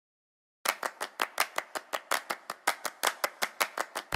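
A rapid, evenly paced run of sharp claps, about six a second, starting just under a second in.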